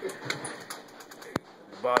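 Quiet shop background with a few faint ticks and one sharp click about a second and a half in; a man's voice starts again at the very end.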